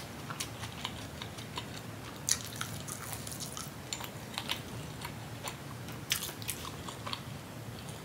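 Close-miked chewing of a mouthful of breakfast food: wet mouth clicks and smacks coming irregularly, a few louder than the rest.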